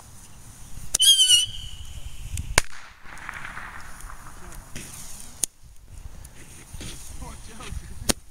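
Consumer fireworks going off: a short warbling whistle about a second in, then a few sharp pops spaced a second or two apart, the loudest about two and a half seconds in.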